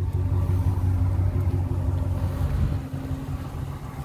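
2017 Ram 1500's Hemi V8 idling: a steady low engine rumble that eases a little after about two and a half seconds.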